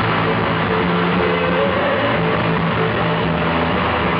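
Live heavy rock band playing loud, distorted electric guitars and bass, holding long sustained notes.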